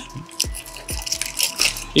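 A bunch of keys clinking and knocking a few times as they are pushed into a Faraday signal-blocking key pouch.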